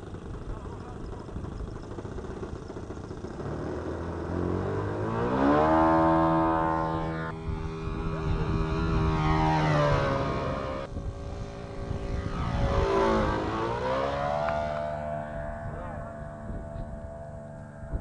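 Engine of a large radio-controlled scale warbird model airplane. It revs up about five seconds in for the takeoff run and holds a steady high note, then its pitch falls and rises as the plane flies low past, fading near the end.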